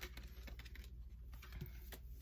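Faint clicks and light taps of oracle cards being handled: a card is drawn from the deck and laid down on a hard tabletop.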